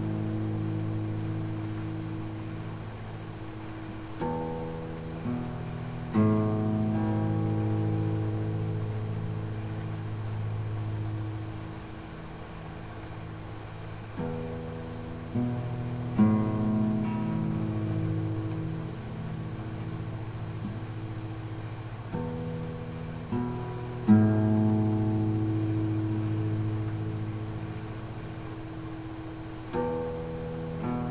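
Acoustic guitar played slowly: chords are strummed in groups of two or three strokes about a second apart, then left to ring and fade for several seconds before the next group.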